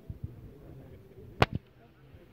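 A single sharp crack about one and a half seconds in, with a faint second click just after, over low outdoor rumble.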